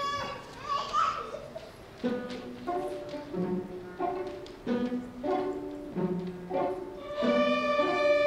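School string orchestra of violins and cellos starting a piece with a music-box-like opening: a steady repeating figure of short, separated notes begins about two seconds in. Near the end it swells into fuller, louder held chords.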